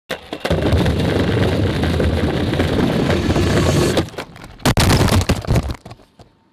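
Longboard wheels rolling over concrete pavement: a steady low rumble with hiss above it. It drops away about four seconds in, followed by a sharp click and a short burst of noise.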